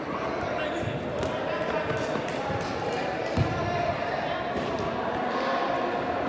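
Soccer ball being kicked on an indoor turf pitch, with a few dull thuds, the loudest about halfway through. Players' voices carry under them in the echo of a large hall.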